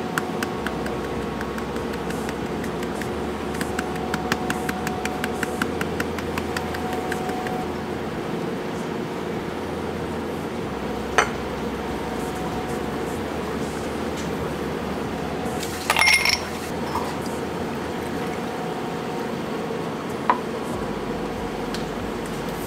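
Light, rapid tapping of a powder shaker dusting cocoa onto a latte's foam, a few taps a second for the first several seconds. Later, a sharp click and a brief ringing clink of glassware, over a steady background hum.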